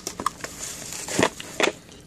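Cardboard box and bubble-wrap packaging being handled during an unboxing, giving irregular crackles and rustles, with two louder crackles a little after one second in and at about one and a half seconds.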